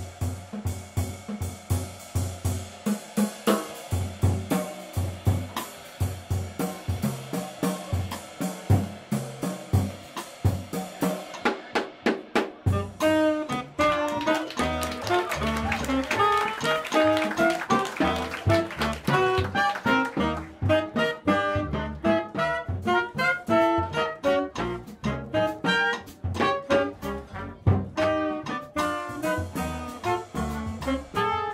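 Live jazz: a drum kit plays alone on snare, toms and cymbals, then tenor saxophone and trumpet come in together about twelve seconds in, playing a melody line over upright bass and drums.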